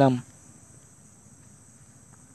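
The end of a man's spoken word just after the start, then a faint, steady, high-pitched drone of crickets in the background.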